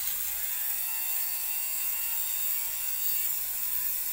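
Torras electric lint remover (fabric shaver) running steadily, a motor whine over a hiss, as it is passed over a woollen coat to shave off the pilled bobbles.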